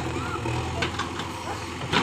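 JCB backhoe loader's diesel engine running steadily with a low hum while the backhoe arm digs.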